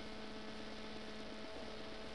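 Faint steady hum of a few held tones over an even hiss, the lowest tone breaking off briefly about one and a half seconds in.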